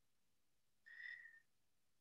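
Near silence, with one brief faint high tone about a second in.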